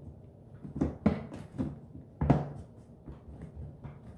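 A lidded plastic food storage box being handled on a wooden table: a run of short plastic knocks and clacks, the loudest a little over two seconds in.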